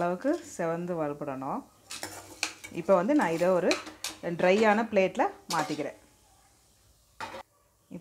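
A slotted metal ladle scrapes and clinks against a metal kadai as roasted dal is stirred and scooped out, with a few sharp clatters. A woman talks over it.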